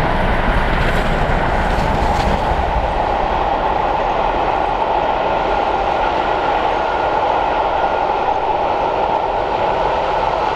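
Passenger coaches rolling past on the rails behind a steam locomotive, a continuous rumble of wheels on track. There is heavier low sound from the locomotive in the first couple of seconds, easing as it moves away.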